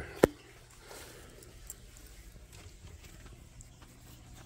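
One sharp click about a quarter second in, then faint handling noise with a few small ticks as the phone and the parts are moved about.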